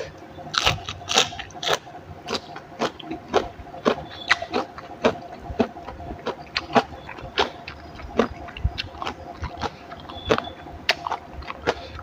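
Close-miked chewing of raw leafy vegetable stems with tomato chili dip: wet, crunchy smacking clicks about twice a second.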